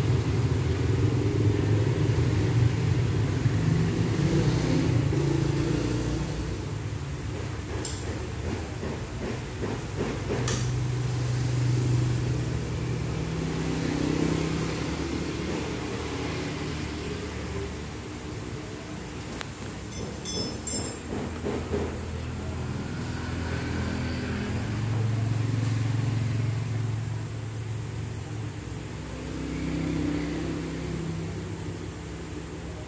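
Engine rumble from motor vehicles running nearby, swelling and fading several times, with a few sharp metallic clicks from hand tools in the workshop.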